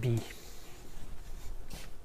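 Pen stylus drawing a quick circle on an interactive whiteboard: a brief faint rubbing just after the spoken "B", with a small tick near the end.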